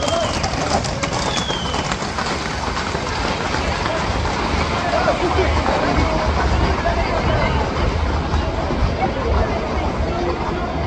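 Hooves of a group of Camargue horses clattering on the asphalt street as they pass at a gallop, with a dense run of clicks in the first two seconds. Loud crowd chatter and shouts carry on throughout.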